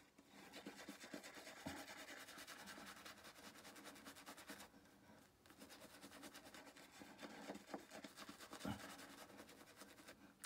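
Faint scrubbing of a shaving brush working soap lather onto a stubbled cheek, with a short pause about halfway through.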